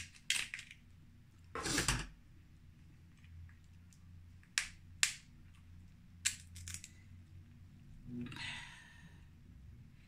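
Crab leg shell being cracked and snipped open with kitchen shears and by hand: a run of separate sharp cracks and snaps, with a brief softer scraping crunch near the end.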